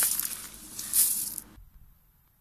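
Dry seed poured from a plastic bucket onto dry ground: a hissing patter of falling grains in two pours, the second about a second in, stopping abruptly after about a second and a half.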